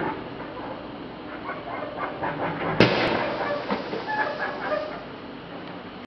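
A firework goes off with one sharp, loud bang almost three seconds in, over a background of short pitched calls.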